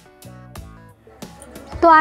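Soft background music of single plucked string notes, each dying away, then a woman's voice starts speaking near the end.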